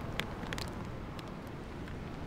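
Steady outdoor background rumble with a few faint, short clicks near the start.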